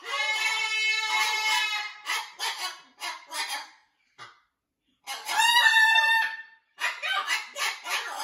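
Macaw vocalizing: a long call with many overtones, then a run of short chattering syllables; after a brief pause, another long call that rises and falls in pitch, followed by more short syllables.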